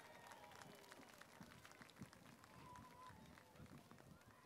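Near silence: faint background ambience with a few scattered faint ticks.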